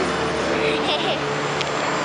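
Steady city street traffic noise, with a faint voice over it about half a second to a second in.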